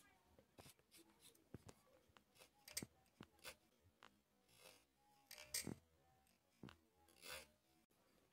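Small carving knife cutting and picking out the sound window of a wooden bird call, heard as faint, irregular scratches and ticks of the blade in the wood.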